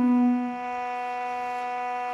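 Duduk holding one long low note, a pause on a single pitch in the melody. It softens about half a second in and then stays steady.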